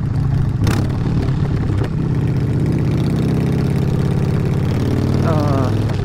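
Motorcycle engine running at a steady speed, with a sharp click about a second in.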